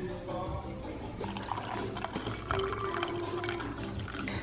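Coffee pouring from a coffee pot into a ceramic mug, with a few light knocks, over soft background music.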